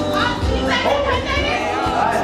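High-pitched voices crying out in wavering, drawn-out cries over background music and crowd noise.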